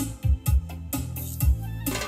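Instrumental music played back through a pair of Bose 701 Series II floor-standing loudspeakers, two bass drivers and two ports per cabinet. It has a heavy, deep bass and a beat of low drum hits about twice a second.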